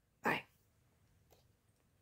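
A single short vocal sound sliding steeply down in pitch, then near silence.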